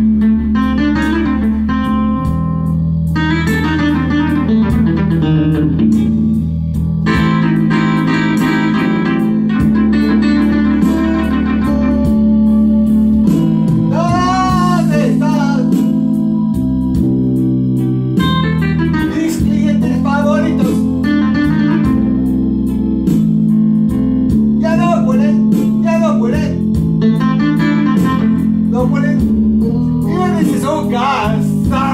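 Instrumental blues break played on electronic arranger keyboards: a guitar-voiced lead line with bent notes, the bends clearest about halfway through, over a steady backing accompaniment.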